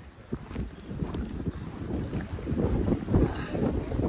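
Wind buffeting the camera's microphone, an uneven low rumble that grows louder over the last couple of seconds.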